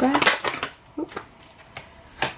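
Tarot cards being handled: the tail of a shuffle, then a few short card snaps and taps as a card is drawn from the deck and laid on the table, about a second in and again near the end.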